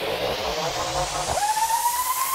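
Electronic dance music build-up: a hissing noise sweep rising steadily in pitch, with low synth tones falling in pitch in the first part, then a synth tone that swoops up a little past halfway and holds, creeping slowly higher.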